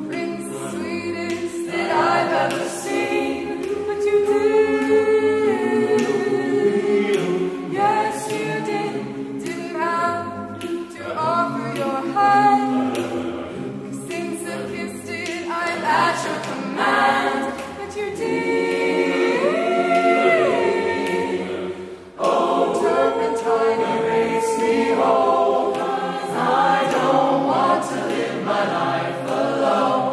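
Mixed-voice chamber choir singing a cappella, a solo voice carried over the choir's sustained chords. About two-thirds of the way through the sound breaks off briefly before the whole choir comes back in fuller.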